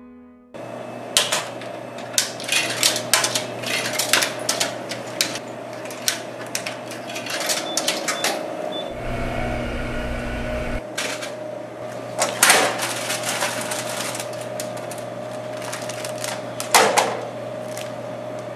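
Vending machine humming steadily, with many clicks and knocks from its front. About nine seconds in, its dispensing motor runs for about two seconds. Louder knocks follow about twelve and seventeen seconds in.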